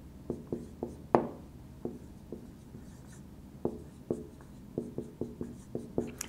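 Dry-erase marker writing on a whiteboard: a string of short, irregular strokes and taps of the marker tip, the sharpest a little over a second in.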